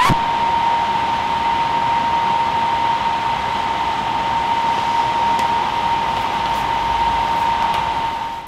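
Steady rushing hiss of an air blower with a single high whine held through it.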